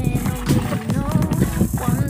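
Background song: a sung vocal over a steady beat.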